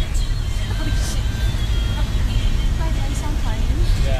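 Steady low rumble of a moving passenger van heard from inside the cabin, with faint voices and laughter over it.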